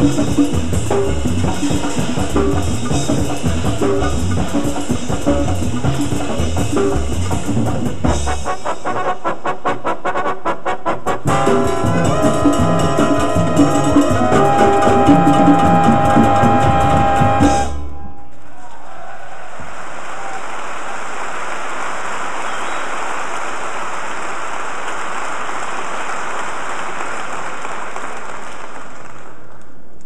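Big band jazz orchestra, brass over drum kit, building to a loud held final chord that cuts off sharply a little past halfway. Steady audience applause follows on the live recording and dies away near the end.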